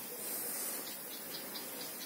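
Steady hiss of water escaping from a burst underground water pipe, a strong leak, with the run-off flowing through the bushes.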